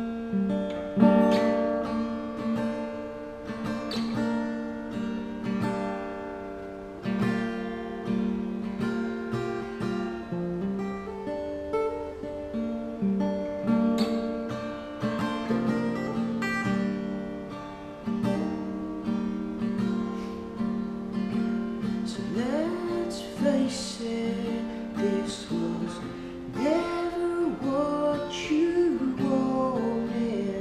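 Steel-string acoustic guitar played solo, chords struck and left ringing in a slow, uneven rhythm. In the last third a man's voice comes in singing over it.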